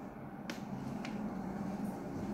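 Quiet room with two faint, sharp clicks, about half a second and a second in, over a low steady hum.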